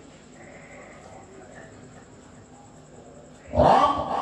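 A quiet stretch of hall background with faint indistinct sounds. Near the end, a man's voice starts loudly through a microphone and PA: a qari beginning a melodic Quran recitation (tilawah) phrase.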